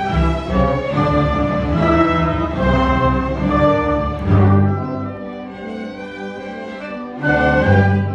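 Orchestra playing classical music, with bowed strings (violins and cellos) prominent. A loud accented chord lands about four seconds in, the music drops quieter for a couple of seconds, then another loud chord comes near the end.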